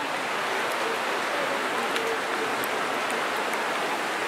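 Steady outdoor hiss of a night street, with faint distant voices.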